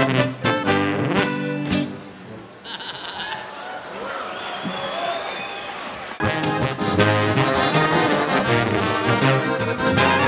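Live alpine folk band of accordion, tuba, clarinet and saxophone playing a brisk tune. The band stops about two seconds in, leaving a few seconds of crowd voices and shouts, and comes back in together about six seconds in.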